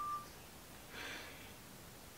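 A short, thin, steady beep that cuts off just after the start, then a faint breath about a second in, over a quiet room.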